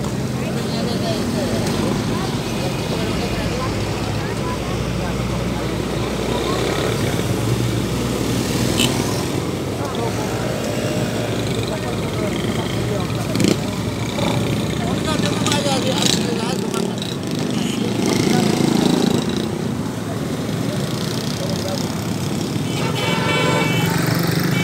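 Busy street ambience: motorcycle and auto-rickshaw engines passing, occasional vehicle horn toots, and people chatting in the background.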